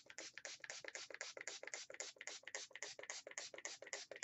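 Quick, even rubbing strokes of a hand-held applicator worked over glue-coated paper, about seven or eight strokes a second, with a faint steady hum behind.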